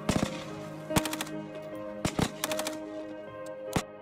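Rifle fire in short rapid bursts and single shots, several volleys about a second apart, over a steady held chord of ambient music.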